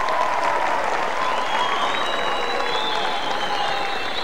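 Studio audience applauding steadily, a dense sustained patter of many hands, with a few faint drawn-out tones riding over the clapping.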